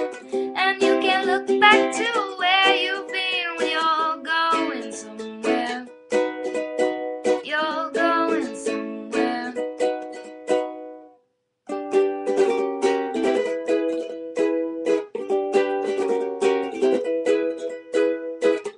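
Ukulele strummed in chords. The playing stops for under a second about two-thirds of the way through, then the strumming picks up again.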